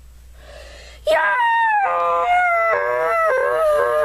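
A high-pitched voice crying out in long, wavering wails, its pitch sliding up and down, starting about a second in.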